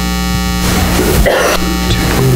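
Loud, steady electrical buzz: mains hum with many overtones carried on the sound-system feed, with a brief rush of noise about halfway through.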